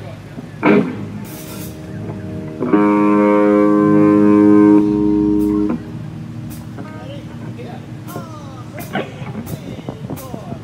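Electric guitar through an amplifier: a chord struck and left ringing steadily for about three seconds, then cut off suddenly. A short loud hit comes just before a second in, and the rest is low stage noise between songs.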